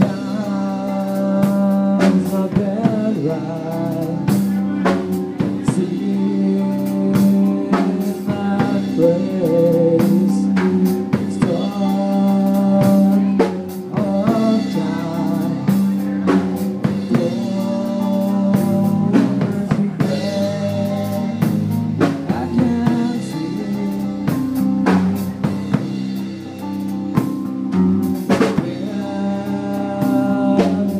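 Metal band playing live: electric guitar, bass guitar and a drum kit, with steady drum hits under sustained guitar and bass notes throughout.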